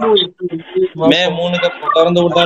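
A man's voice talking, heard over a video-call connection, with a brief break in the speech early on.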